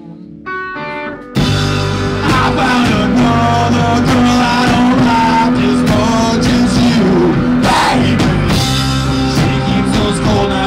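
Live rock band: a lone electric guitar chord rings briefly, then about a second and a half in the full band comes in loud, with electric guitars, bass guitar and drum kit playing together.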